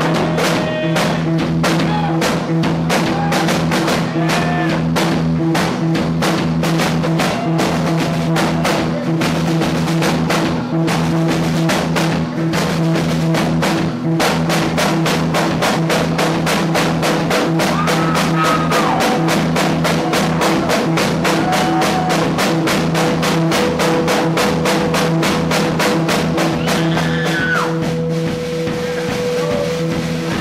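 Live rock band playing an instrumental passage: drum kit keeping a fast, even beat on drums and cymbals over held notes from bass and guitars.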